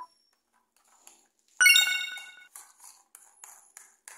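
A single bright bell-like ding about one and a half seconds in, ringing out and fading within a second. Faint clicks of plastic toy train cars being handled come before and after it.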